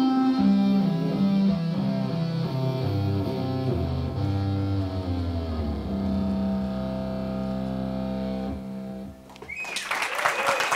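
ROLI Seaboard playing a distorted electric-guitar lead sound: a descending run of notes that settles into a long, low held note, which stops about a second before the end. Audience applause starts just before the end.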